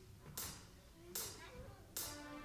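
A drummer's count-in: three sharp clicks about three-quarters of a second apart, keeping the song's tempo, with the band coming in on the last one.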